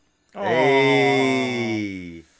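A man's long, loud, drawn-out "Oh!" exclamation, held for nearly two seconds with its pitch slowly falling.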